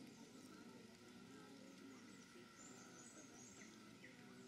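Near silence: faint outdoor room tone, with a few faint, high bird chirps in the second half.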